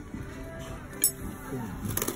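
Background music with voices underneath, and a sharp clink of metal cutlery on a plate about a second in, with a lighter one near the end.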